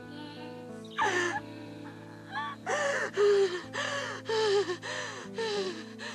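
A woman's gasping, sobbing breaths over a sustained, held music score: one sob about a second in, another near the middle, then a quick run of them through the second half.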